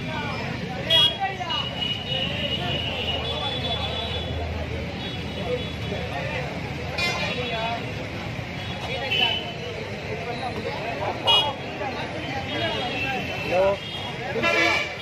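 Outdoor street crowd: many voices talking and calling over each other, with high toots sounding several times. Three sharp bangs punctuate it: about a second in, around seven seconds, and past eleven seconds.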